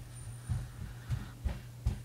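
About four soft, low thumps of a hand-held phone microphone being handled, the last sharper, over a steady low hum.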